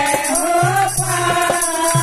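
Women singing a Haryanvi devotional bhajan into a microphone, group voices joining in, over a steady percussion beat with jingling strokes.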